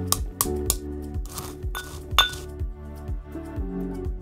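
Background music with a steady beat, over a few sharp clinks of a stone pestle striking and grinding in a stone mortar as chalk is crushed to powder. The loudest clink comes a little over two seconds in.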